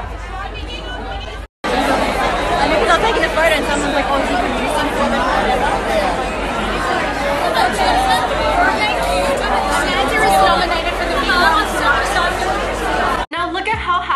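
Crowd chatter: many voices talking over one another, recorded on a phone. The sound cuts out for a moment about a second and a half in and returns louder, and another cut near the end brings in music.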